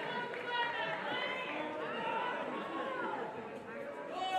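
Voices talking over one another, a steady chatter of speech with no clear words.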